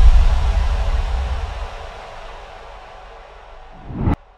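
Outro sound design: a deep rumbling boom and hiss fading away over about two and a half seconds, then a short whoosh swelling near the end.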